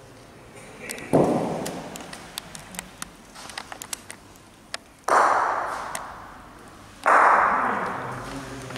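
Bocce balls striking the indoor court: three heavy impacts, each sudden and trailing off over a second or more, with a scatter of short sharp clicks between the first and second.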